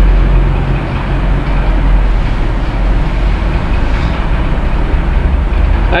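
Steady low mechanical rumble with a hum, shifting slightly about four seconds in.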